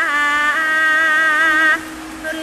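Javanese gamelan music for a bedhaya court dance, carried by one long held melodic note that steps up in pitch about half a second in and breaks off near the end.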